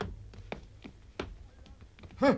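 A few faint, sharp taps and knocks spread over two seconds, over low room noise.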